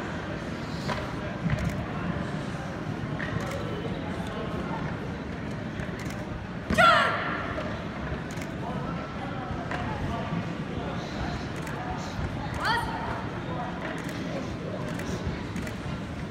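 A karateka's sharp kiai shout during a kata, loudest about seven seconds in, with a second, fainter shout later, over the steady murmur of voices in a large sports hall.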